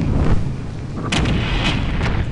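Artillery explosion sound effect: the deep rumble of a big blast rolls on, then two more sharp blasts come a little over a second in, half a second apart, each followed by a rumbling tail.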